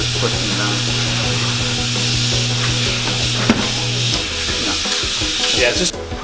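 Tire changer running as a tire is mounted onto a wheel: a steady motor hum that stops about four seconds in, over a steady hiss, with a single click shortly before the hum stops.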